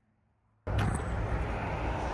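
Near silence, then about two-thirds of a second in a steady outdoor background rumble cuts in abruptly and holds, with a faint click just after it starts.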